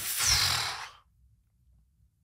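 A heavy breath close to a microphone, a rush of air lasting about a second, then quiet room tone.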